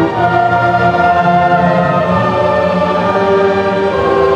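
Large mixed choir singing long held chords with an orchestra accompanying.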